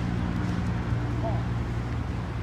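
Steady low engine hum of street traffic, with a brief faint voice a little past halfway.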